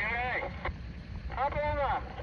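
A person's voice calling out twice in long, drawn-out cries that rise and fall, over a steady low rumble of wind on the microphone.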